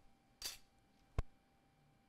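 A brief scraping rustle, then a single sharp click under a second later, the louder of the two: a small tool being handled on the repair bench.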